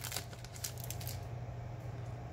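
Foil wrapper of a baseball card pack crinkling in a few short bursts as the cards are pulled out of it, then faint handling rustle of the cards, over a steady low hum.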